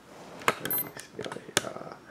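Sharp plastic clicks and knocks from handling a hobby RC radio transmitter, two of them louder, about half a second and a second and a half in, with a faint, very high brief beep just before one second.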